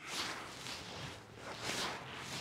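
Large wooden prop greatsword swung through the air in repeated two-handed cuts, giving three soft whooshes.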